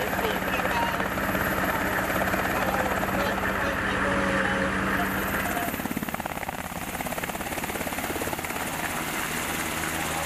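Black Hawk helicopter's twin turbine engines and main rotor running close by, a loud steady machine noise. About halfway through the sound shifts, the low hum dropping away and a quick, even rotor beat taking over, as the helicopter lifts off.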